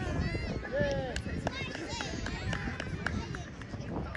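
Young players and spectators calling and shouting across a playing field, high voices coming and going, with a few short knocks scattered among them.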